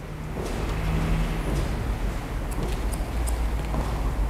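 A steady low rumble, with a few short, sharp snips of barber's scissors cutting wet hair held against a comb.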